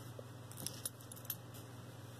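Faint, scattered clinks of a silver-tone Monet chain necklace and its metal ball drops being handled and laid out on a velvet pad: a few light separate ticks.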